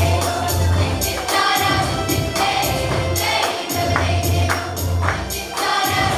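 Children's choir singing in unison with electronic keyboard accompaniment: held bass notes under the voices and a steady percussive beat.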